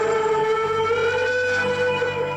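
A young man holding one long sung note into a karaoke microphone over a backing track. The note wavers slightly near the end.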